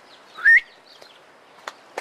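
A single short, loud whistled note rising in pitch about half a second in, with a faint click near the end.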